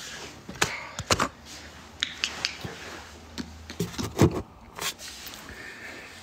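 Handling noise close to the microphone: an irregular run of clicks, taps and knocks, the loudest about four seconds in.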